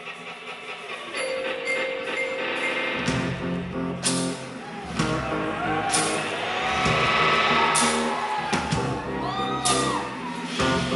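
Live indie rock band playing an instrumental opening that builds from quiet sustained notes to the full band, with the low end and drums coming in about three seconds in and several cymbal crashes after that.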